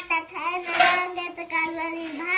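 A child singing one long held note, the voice steady in pitch and bending only as it starts and ends.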